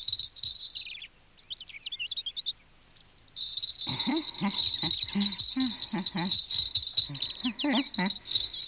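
Soundtrack forest ambience: a steady high cricket chirring with bird chirps and twittering in the first seconds. The chirring drops out briefly and returns about three seconds in, joined by short, low pitched sounds.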